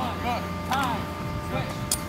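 Men shouting short, unintelligible calls in several bursts over a steady low hum, with a brief sharp click near the end.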